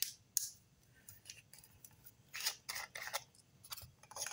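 Small handheld flashlight being opened and its batteries handled: a series of light clicks and scrapes, with a slightly longer cluster about two and a half seconds in.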